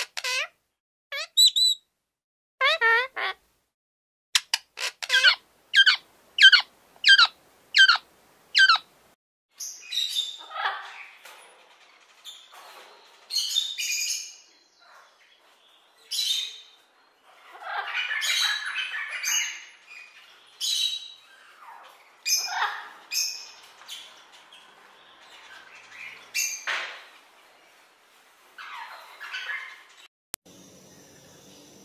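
Parrots calling. In the first nine seconds there is a series of short, clear, ringing calls, roughly two a second. After that come harsher squawks and chattering calls.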